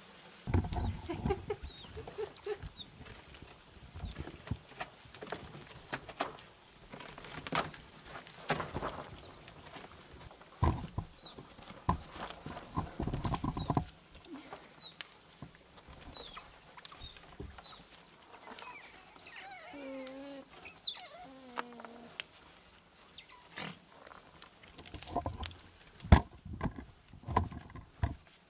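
Asian small-clawed otters scrabbling at and tearing into a cardboard box, with irregular knocks, scrapes and rustles of the cardboard and scattered short high-pitched chirps. A short wavering call comes about twenty seconds in.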